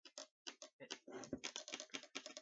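Empire Axe electronic paintball marker clicking: a few separate clicks, then from about a second and a half in a fast, even run of clicks, roughly a dozen a second. This rapid "tack tack" is what the owner takes as the sign that the marker's anti-chop eyes are switched off.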